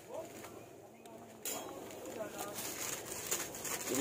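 Faint background talk over a steady hiss that grows louder about a second and a half in, with a stockpot of sinigang broth at a rolling boil.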